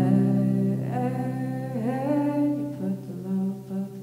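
A woman singing live over her electric guitar. A low guitar note rings on beneath her voice, which slides up in pitch about two seconds in and breaks into shorter notes near the end.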